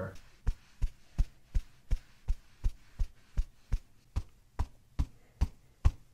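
A steady, evenly paced series of short soft knocks, nearly three a second, starting about half a second in.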